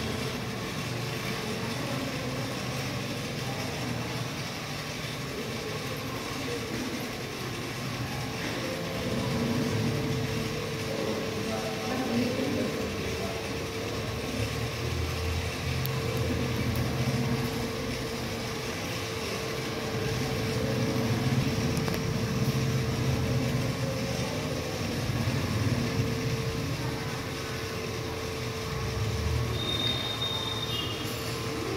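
Indistinct murmur of people's voices over a steady hum and low rumble, with no clear words.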